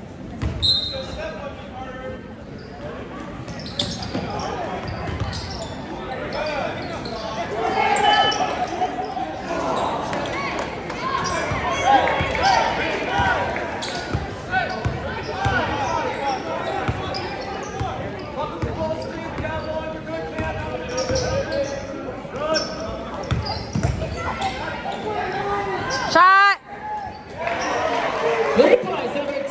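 Basketball game in a gymnasium: a ball bouncing on the hardwood floor and players' footfalls amid the steady talk of spectators, with a brief, loud squeal near the end.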